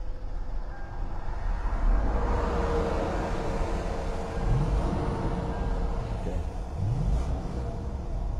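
A crash-damaged car's engine starts and runs with a steady low rumble, so the car still goes after the accident. Its pitch rises briefly twice in the second half.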